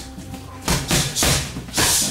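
Gloved punches and a kick landing on handheld Thai pads: about four sharp smacks in quick succession in the second half, over steady background music.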